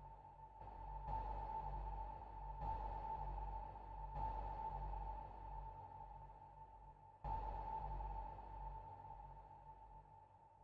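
Submarine sonar pings used as a sound effect in the quiet outro of an electronic dance track: a ringing ping over a low rumble, struck about five times with each ping fading, the loudest about seven seconds in. The sound dies away toward the end.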